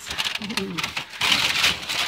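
Paper wrapping around caramel apples crinkling and rustling as it is handled, with a louder, longer rustle about a second in. A brief voice sound comes just before it.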